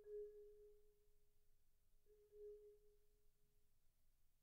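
Faint single vibraphone note struck twice, about two seconds apart, each left to ring and fade slowly.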